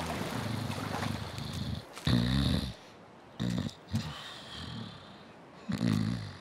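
A sleeping man snoring, a cartoon sound effect: low snores come and go, the loudest about two seconds in, with shorter snorts after it and another near the end.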